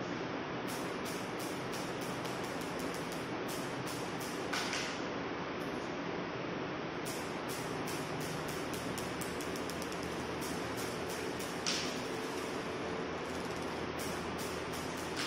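Steady background hiss, with two faint short clicks, one about four and a half seconds in and one about twelve seconds in.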